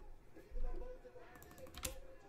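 Typing on a computer keyboard, with a quick run of key clicks in the second half and a soft thump about half a second in.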